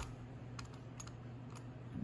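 Utility knife blade scoring a plastic holster's sweat guard along a tape line: a sharp click at the start, then a few faint, short scratchy clicks as the blade is drawn over the edge again and again.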